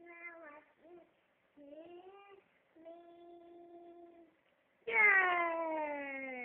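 A toddler singing: short sung notes, one long held note, then near the end a much louder long note sliding down in pitch.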